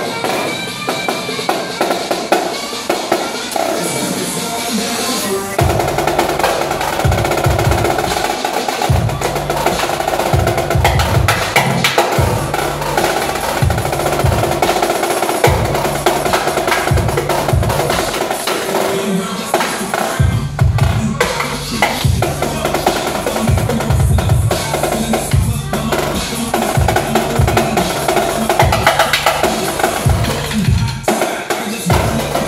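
Live music: marching snare drums played with sticks in fast rolls and patterns. A deep, pulsing bass line comes in about five seconds in.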